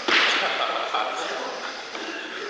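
A sudden sharp crack-like sound that fades over about half a second, then a smaller knock about a second in.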